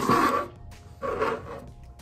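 A stretched canvas being set down and slid across a tabletop: a short scraping rush at the start, then a softer scrape about a second in.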